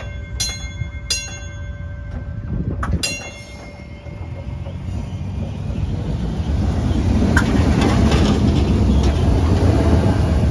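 A 1950s PCC streetcar's bell is struck several times in the first three seconds, each strike ringing on. Then the car rolls up and past on its rails, the rumble of its wheels growing loud over the last few seconds.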